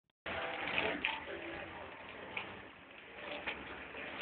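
Faint, indistinct voices over the steady low rumble of a car's interior.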